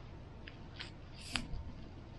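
A few faint clicks, the loudest about halfway through, with a brief soft scratch as a calligraphy brush touches down on paper to start a stroke.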